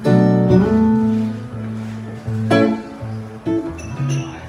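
Archtop guitar playing chords without vocals: a chord struck at the start rings on, another is struck about two and a half seconds in, and a few shorter chords follow near the end.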